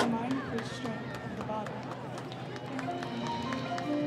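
High school marching band playing from the field, with held brass notes coming in about three seconds in, under voices of the spectators in the stands and light percussion ticks.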